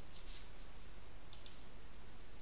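A couple of faint computer-mouse clicks about a second and a half in, over a steady low hum and hiss of room tone.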